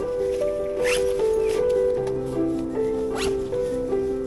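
Background music with a slow melody of held notes. Over it, a backpack zipper is pulled twice, about a second in and again past the three-second mark, each pull rising in pitch.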